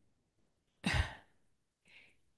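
A person's short sigh about a second in, lasting under half a second.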